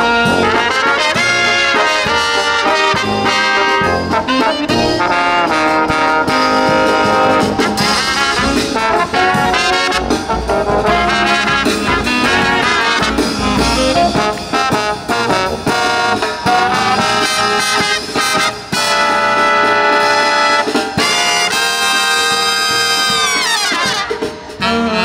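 Live brass marching band of saxophones, trumpets and sousaphone over snare and bass drum, playing a Christmas medley. A phrase ends with a falling glide in pitch near the end.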